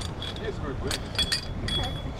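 A few light metallic clinks and clicks, mostly in the second half, as the flukes of a small folding grapnel anchor are opened and locked out. They sit over a steady background noise.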